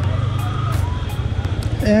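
Yamaha MT-15's single-cylinder engine running steadily while the bike is ridden, a low, even drone.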